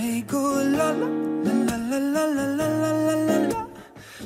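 Pop song music: a sung melody of long held notes that bend up and down over a guitar backing, dipping briefly near the end.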